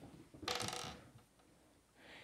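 A metal cabinet handle rattling and scraping against a plastic electrical box cover as it is fitted into place: one brief, finely ticking scrape of about half a second.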